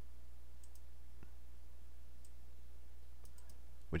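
A few faint, scattered computer mouse clicks over a steady low hum.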